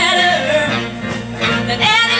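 A big band playing live: horns and rhythm section, with a woman singing over it.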